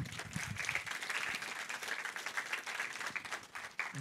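Audience applauding: a dense, even patter of many hands clapping, opened by a brief low thump at the very start.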